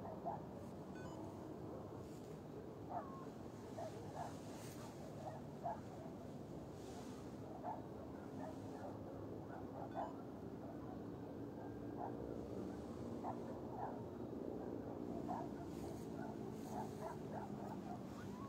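Faint, distant dog barks scattered through a quiet night, with a faint drawn-out howl-like wail in the second half.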